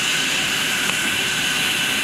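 Steady rushing hiss of water flowing through a Fleck 9000 SXT water softener valve to the drain during its backwash cycle. A faint click comes about a second in.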